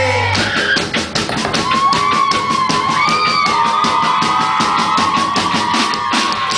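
Live pop-rock band playing: sustained chords give way about half a second in to the full drum kit driving a steady beat under guitar, with a wavering melody line carried above.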